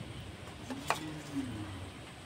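A steel serving spoon clinks once against a steel bowl just under a second in, as a kofta is scooped out of the curry.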